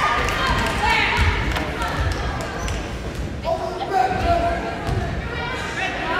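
A basketball bouncing on a wooden gym floor, a few low thumps, with voices of players and spectators in the gym.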